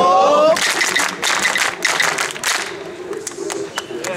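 A crowd of people clapping their hands together in a burst lasting about two seconds, after a drawn-out call from a man's voice.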